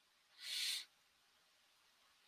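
A person drawing a single short breath, a soft hiss lasting under half a second about half a second in.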